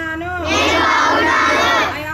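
A group of schoolchildren loudly chanting a word or phrase together in unison, starting about half a second in and lasting over a second, after a single voice leads it, as in a call-and-response classroom drill.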